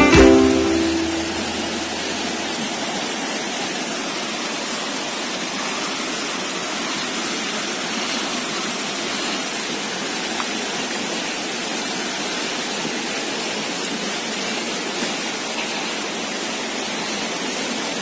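Ukulele music fading out in the first couple of seconds, then the steady, even rush of river rapids.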